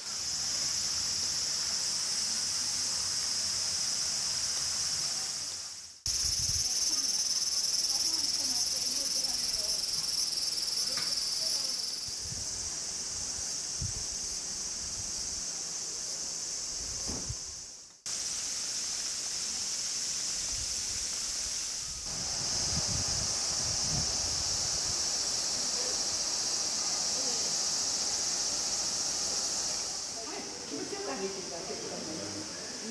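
A steady, shrill chorus of summer cicadas in the trees. It drops out and changes level abruptly several times.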